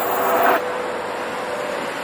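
A steady machine hum with one constant tone over a broad hiss, with a brief louder noisy burst at the very start.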